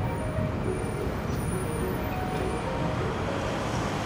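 Steady rumble of road traffic with no distinct events, at an even level throughout.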